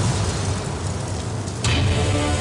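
Trailer sound effects: a low, noisy rumble dying down over a black screen, then a sudden sharp hit near the end that opens into the title music.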